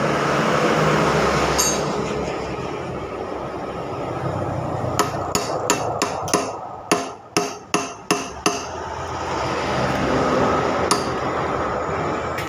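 A hammer striking metal in a run of about ten sharp blows, roughly three a second, midway through, with a single blow before and after. This is work on a motorcycle's steering head bearings. A steady background noise runs underneath.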